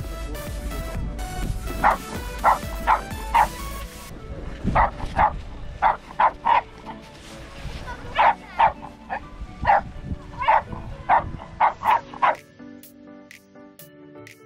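A small dog barking in short, sharp yips, about twenty in quick clusters, over background music. Near the end the barking stops and only the music goes on.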